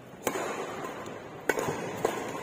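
Badminton racket strings hitting a shuttlecock twice, about a second and a quarter apart, each a sharp crack that echoes around the hall.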